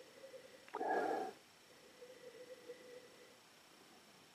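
One short, sharp sniff through the nose into a glass of red wine, about a second in, as the wine is nosed for its aroma, with faint breathing after it.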